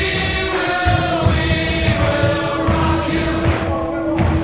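Music with sung vocals.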